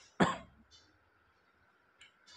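A man coughs once, short and sharp, about a quarter second in.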